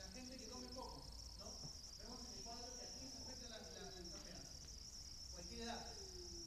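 A lecturer's voice, faint and distant, speaking in a large hall. A steady high-pitched whine sets in suddenly and holds underneath it.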